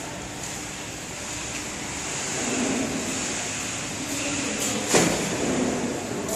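Steady mechanical hum and hiss of packing machines running, with one sharp clack about five seconds in.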